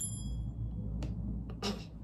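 A single bright ding whose high ringing tones fade out over about half a second, over a steady low hum, with a faint click about a second later.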